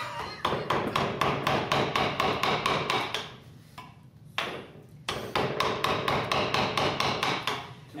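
A mallet driving a carving gouge into a block of maple, in rapid strikes about five a second, in two runs with a short pause about three seconds in.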